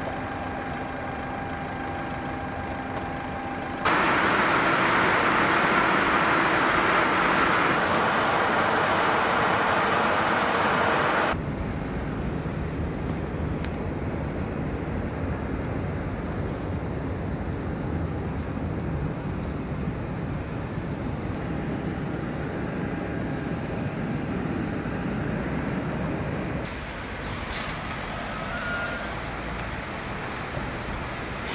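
Steady engine and ramp noise in edited segments. It opens as a hum with two steady low tones. About four seconds in it cuts to a louder rushing noise, which lasts about seven seconds. Then it cuts to a lower rumble.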